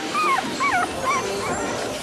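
A dog whining, a few short high whines that rise and fall, begging impatiently for its bone.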